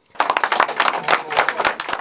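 A small group applauding: many hands clapping in a dense patter that starts abruptly a moment in.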